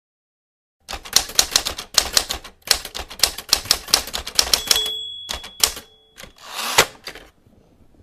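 Typewriter sound effect: a fast clatter of key strikes for several seconds, then a bell rings for over a second. A carriage-return zip follows, ending in a sharp clack.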